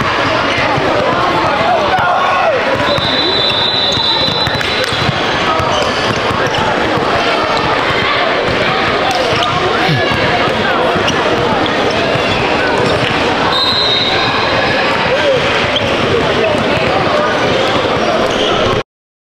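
Gymnasium crowd ambience: many voices talking at once in a large hall, with basketballs bouncing on the hardwood floor. A thin high steady tone comes and goes a few times.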